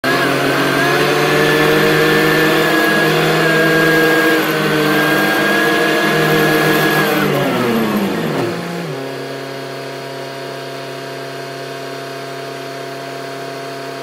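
Backhoe loader's diesel engine running at high revs while travelling. About seven seconds in it is throttled back, and its pitch slides down over a second or so to a steady, quieter idle.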